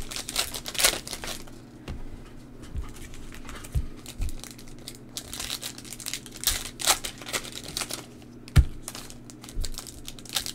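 Crimped plastic-foil wrappers of 2021 Topps Heritage baseball card packs being torn open and crinkled by hand, in bursts of rustling near the start and again after about six seconds. A few soft knocks and one sharper thump about eight and a half seconds in, the loudest sound, as packs and cards are handled on the table.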